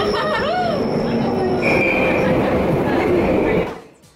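London Underground train running: a loud, steady rumble of the carriage in motion, with a high steady wheel squeal through the middle and later part. Voices call out briefly at the start, and the sound cuts off suddenly just before the end.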